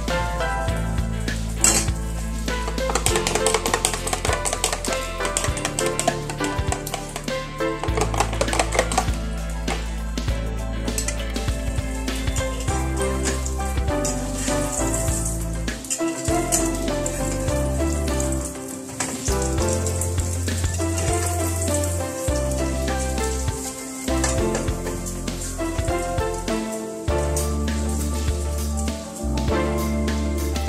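Food frying and sizzling in a pan on a gas stove, stirred and scraped with a metal spatula in short bursts, with background music playing over it.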